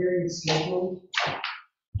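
A person speaking at a meeting table, with a short hiss-like burst about a second in, then the sound cutting out to dead silence just before the end.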